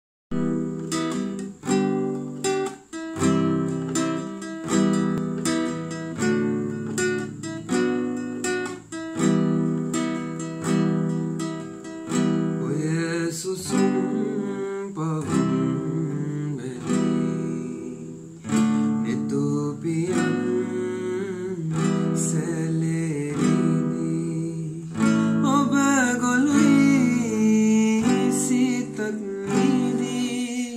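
Classical guitar played in rhythmic chords, alone at first; about twelve seconds in, a male voice begins singing over the guitar accompaniment.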